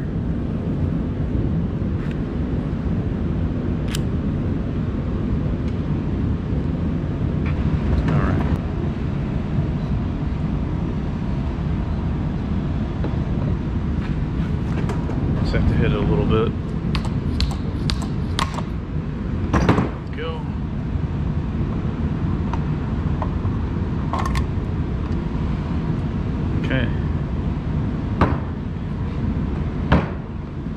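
Metal motor parts and hand tools being handled on a workbench: scattered clicks and knocks, a cluster of them past the middle and one sharper knock just after, over a steady low rumble.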